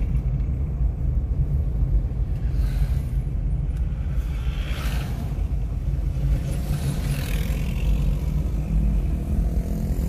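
Steady low rumble of a car driving over a rough dirt road, heard from inside the cabin: engine and road noise, with brief hissing swells about five and seven seconds in.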